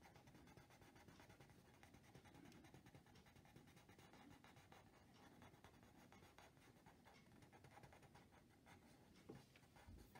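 Faint scratching of a pencil on paper, short irregular shading strokes, with a slight tap a little before the end.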